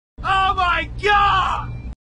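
A voice calling out twice in loud, wordless shouts, over a steady low rumble, cut off abruptly near the end.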